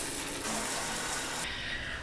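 Shower head spraying water onto a tiled shower wall, a steady rush of water.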